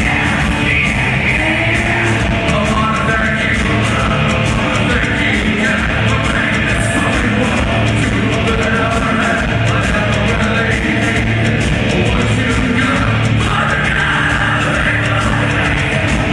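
Live industrial metal band playing loud, with guitars, bass and drums, and a singer singing and yelling into a microphone, recorded from within the concert crowd.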